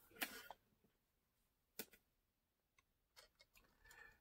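Near silence with a few faint, light clicks, the sharpest just before the middle: small plastic parts being handled as an HO boxcar's coupler is lifted against an NMRA coupler height gauge.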